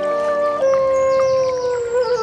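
Bansuri bamboo flute playing slow meditation music: a held note, then a new note about half a second in that bends slowly downward.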